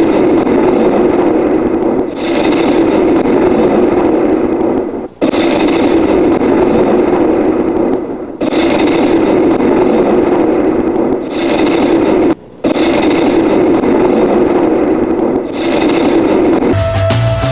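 A loud rumbling sound effect: a dense, noisy rumble that repeats in stretches of about two to three seconds, broken by brief dips, as if looped.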